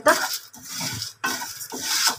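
A wooden spatula stirs and scrapes whole spices and sesame seeds around a dry non-stick pan in repeated strokes, the seeds rustling against the pan. The spices are being dry-roasted only lightly, until fragrant.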